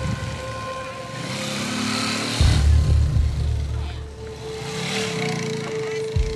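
Small motorbike engines running and revving, their pitch rising and falling, mixed with background music.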